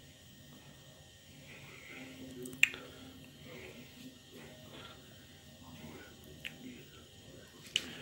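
Thin pancake batter sizzling faintly in a frying pan, with a few sharp clicks, the loudest about two and a half seconds in.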